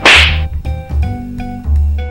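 A sudden sharp whip-crack-like sound effect right at the start, fading within about half a second, over background music with a steady bass beat.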